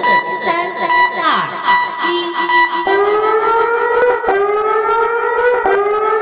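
An alert siren starts about three seconds in: a wailing tone that rises slowly, then drops back and starts again about every one and a half seconds. Before it comes a steady high beep tone.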